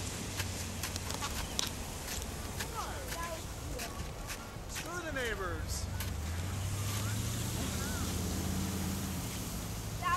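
Outdoor ambience: a few distant voices calling, scattered light clicks, and a low engine hum that swells in the second half, like a passing vehicle.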